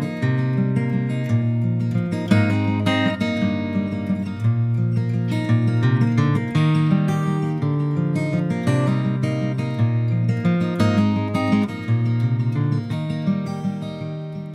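Acoustic guitar instrumental intro, strummed and plucked, with no vocals yet.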